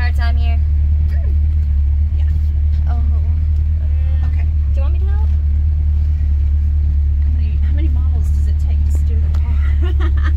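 1977 Camaro Z28's 350 V8 running with a steady low rumble, heard from inside the cabin.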